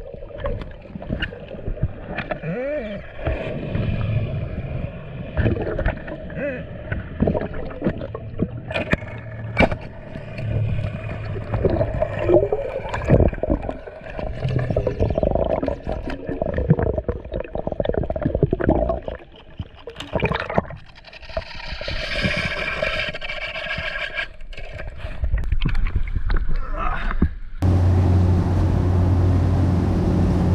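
Underwater sound picked up by a diver's camera: gurgling water and bubbles with wavering, gliding tones and scattered sharp clicks and knocks. About two seconds before the end it cuts to a boat running at speed, its outboard engines giving a steady low drone with wind and spray hiss over it.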